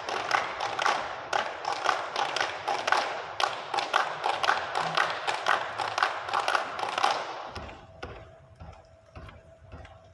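Rhythmic hand clapping by the seated dancers, about four sharp claps a second, stopping suddenly about seven and a half seconds in. A faint held tone and low rumble follow.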